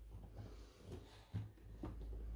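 Faint crackle and rustle of a crusty corn-and-wheat-flour soda bread (kulaç) being torn apart by hand, with one sharper snap of the crust a little past halfway and a smaller one near the end.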